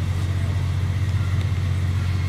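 A steady low hum with a faint hiss above it, unchanging throughout, with no distinct events.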